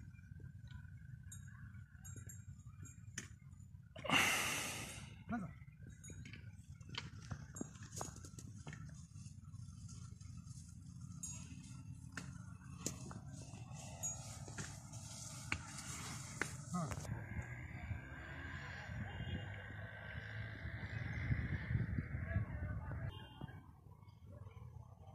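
People talking in the background, with a laugh about five seconds in, over a steady low outdoor rumble and a loud brief rush of noise about four seconds in.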